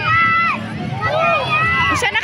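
High-pitched voices of young people talking and calling out, no words clearly made out.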